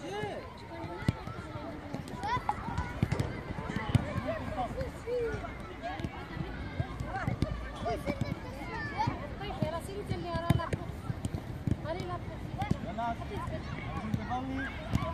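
Children's voices calling out across an outdoor football pitch, with the sharp knocks of footballs being kicked a few times.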